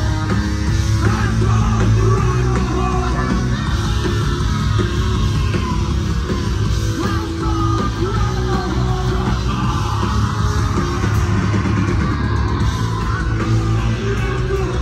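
Live hard rock band playing loud with distorted electric guitar, with sung and shouted vocals over it.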